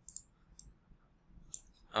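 A few faint, short clicks of a stylus on a tablet as handwritten annotations are edited: one near the start and a small cluster about one and a half seconds in.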